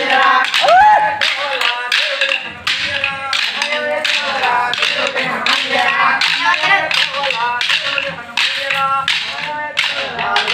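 Hand-held dance sticks struck together by a group of stick dancers, a steady rhythm of sharp clacks about two to three a second, over singing of a devotional song.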